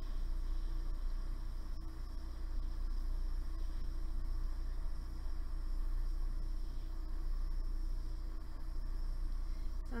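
Steady rushing hiss of a handheld soldering torch flame, heating a metal pendant through to reflow the solder because the joined piece is acting as a heat sink.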